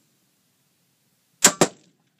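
Two sharp precision rifle shots in quick succession, about a fifth of a second apart, a little past halfway through.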